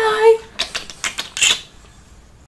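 A woman's drawn-out "bye" trails off, followed by a rapid string of about ten short smacking kisses over roughly a second, the last one the loudest.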